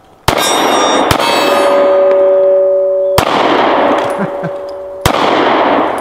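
Four shots from a Springfield EMP 9mm 1911 pistol, the first two less than a second apart and the last two about two seconds apart, each with a long echo. Between shots a hit steel target rings with a steady tone.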